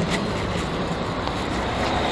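Steady road traffic noise from cars driving past on a busy city street, an even hiss and rumble.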